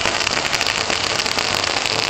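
A string of firecrackers going off in a rapid, dense crackle of sharp pops.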